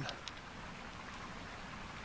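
Faint steady background hiss, with a couple of faint light clicks near the start as the back plate is fitted onto a revolver's cartridge conversion cylinder.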